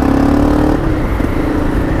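Motorcycle engine running while the bike rides along, with wind rumble on the bike-mounted camera. The engine note rises slightly, drops away briefly just under a second in, then comes back steady.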